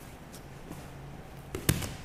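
Two grapplers scuffling on a mat during a bridge-and-roll escape from side control, with one sharp thump near the end as their bodies land on the mat.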